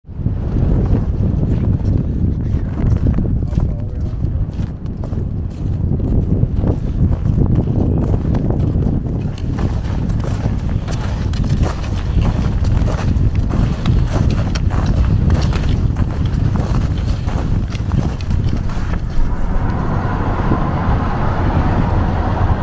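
Strong wind buffeting the microphone with a steady low rumble, and irregular crunching footsteps on hard snow.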